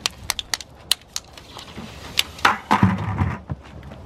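Sharp plastic clicks and crackles as a water bottle filled with liquid nitrogen is capped and handled. About two and a half seconds in, a louder crunch and knocks follow as a plastic bucket is set down over the bottle, with scuffing steps.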